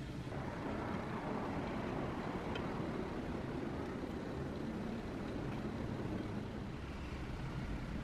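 A steady low rumbling noise that swells over the first couple of seconds and eases off near the end, with a faint light tap in the middle.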